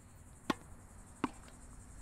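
Two sharp knocks about three-quarters of a second apart: a tennis racket striking a ball as it is fed, then the fainter knock of the ball hitting a wooden board held up at the net.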